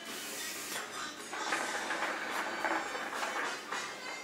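Hookah being smoked: water bubbling in the base as smoke is drawn through the hose for several seconds, with a hiss of air.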